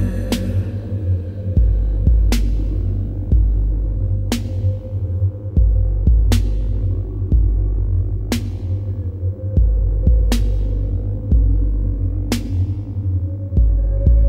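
Instrumental electronic music without vocals: a deep, throbbing bass line under a sustained synth tone, with a sharp percussive hit about every two seconds that rings out briefly.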